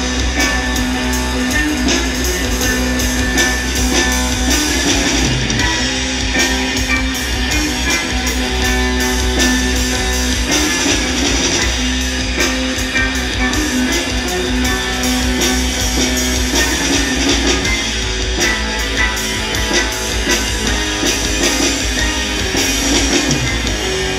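Live instrumental rock from a drums-and-ukulele duo: ukulele played through an effects pedal chain so it sounds like an electric guitar, holding notes over busy drum-kit playing with steady cymbal hits.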